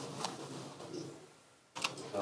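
Faint room tone in a hall, with a few soft clicks, one just before the end.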